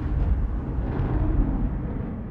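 Deep rumbling tail of a cinematic boom sound effect on a logo sting, slowly dying away.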